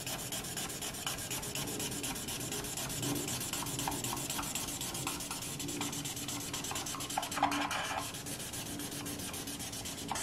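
Felt-tip marker scratching on paper in rapid back-and-forth strokes as a diamond is coloured in.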